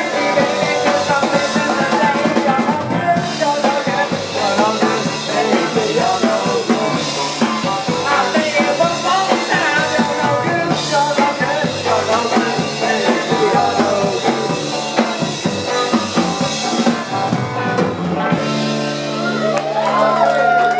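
Live garage rock band playing: a male voice singing over electric guitar, bass guitar and drum kit. Near the end the song settles into a held, ringing chord.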